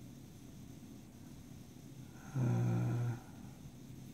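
Quiet room tone, broken about two and a half seconds in by a man's drawn-out, level-pitched hesitation sound, "uhh", lasting under a second.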